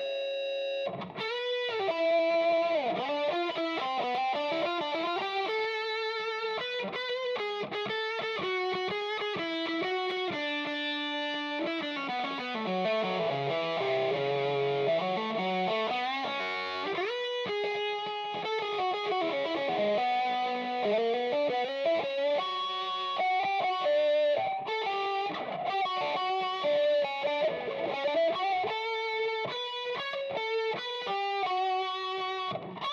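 Electric guitar with D. Allen Voodoo 69 pickups, played through a vintage Ampeg Reverberocket II tube amp with its built-in reverb. It plays single-note lead lines with held notes and a long slide down and back up around the middle. The pickup selection is bridge and neck in series but out of phase, which the player says sounds like a telephone sometimes.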